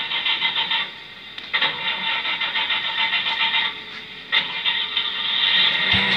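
Crackly, static-like hiss playing from a vinyl record on a turntable, full of fine ticks, coming in three stretches with short dips between them.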